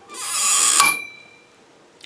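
Lever-action hand hole punch driven through the thin wall of a stainless steel container: a grinding crunch lasting under a second that ends in a sharp snap as the punch breaks through. The steel can rings briefly after the snap.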